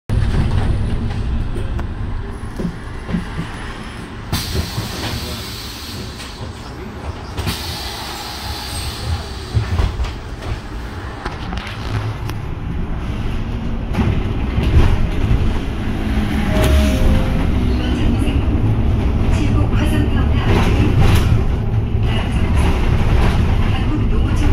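Cabin sound of a Woojin Apollo 1100 electric city bus in motion: a steady low road and drivetrain rumble with rattles from the body and fittings. Two hissing noises about four and seven seconds in, and the rumble grows louder from about halfway as the bus picks up speed.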